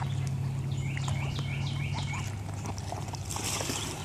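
Domestic ducks bathing in shallow pond water, splashing lightly, with the splashing growing louder near the end. About a second in, a quick run of short high chirps comes at about four a second.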